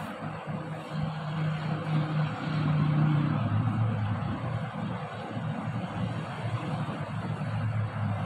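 A motor vehicle's engine running close by, loudest about three seconds in, its hum then dropping in pitch, over a steady background hiss.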